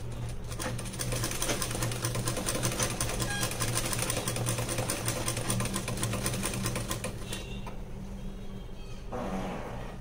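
Sewing machine running steadily, its needle clattering rapidly as it stitches a zip onto fabric, then stopping about seven seconds in.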